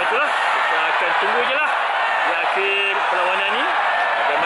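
A man talking close to the microphone over the steady noise of a large stadium crowd.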